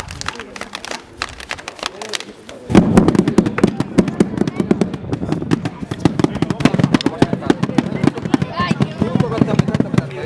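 Children beating tapetanes, the black cylindrical Holy Week drums of Medina de Rioseco, with wooden sticks. A few scattered taps, then about three seconds in loud, rapid drumming from the whole group starts and keeps going.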